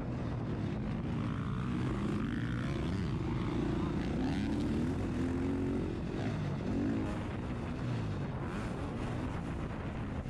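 KTM motocross bike's engine running hard during a race, its pitch rising and falling over and over as the rider rolls on and off the throttle and shifts.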